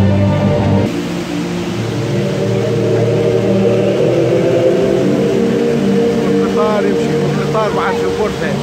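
The steady rush of a tall indoor waterfall pouring into its basin, under music with long held tones. Voices rise briefly near the end.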